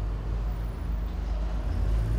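Steady low rumble of outdoor background noise, its weight at the bass end, with no distinct events.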